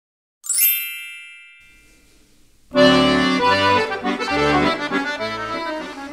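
A bright chime rings about half a second in and fades away; a little under three seconds in, accordion music starts, a melody with chords over low bass notes.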